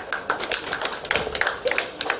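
Small seated audience clapping: a dense, irregular patter of separate hand claps.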